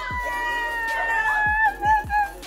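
Women's excited, high-pitched squeal of greeting: one long held cry, its pitch sinking slightly, breaking into short wavering cries near the end.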